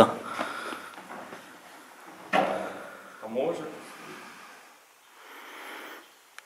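A single sudden knock about two seconds in, dying away quickly, then a brief low murmur of voices.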